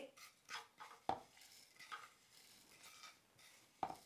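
Faint scraping of a spoon in a frying pan as dry-toasted grated coconut is scooped out, with a few light knocks of the spoon against the pan: the clearest about a second in and one just before the end.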